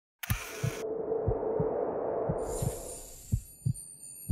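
Logo intro sound effect: a short hiss at the start, then low thumps in pairs about once a second like a heartbeat, over a steady hum. A bright, shimmering high ringing comes in about halfway through.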